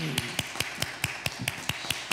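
Hands clapping in a steady rhythm, about five claps a second, as applause.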